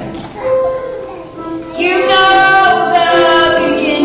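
A woman sings into a microphone with grand piano accompaniment. The first couple of seconds are soft piano, then her voice comes in loudly and holds one long note.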